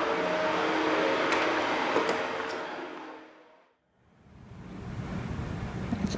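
Steady background hum and hiss with a few faint held tones. It fades out to silence about three and a half seconds in, and a different steady hiss fades in near the end.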